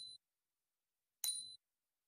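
Two short electronic dings from a computer, about a second and a quarter apart, each a steady high tone that fades quickly.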